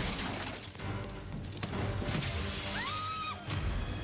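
Glass shattering and crashing as a window is broken through, over dramatic film-trailer music. A short high gliding sound comes near the end.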